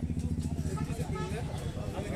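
An engine running steadily with a fast, low throb, with voices chattering over it. A heavy knife chops fish on a wooden block.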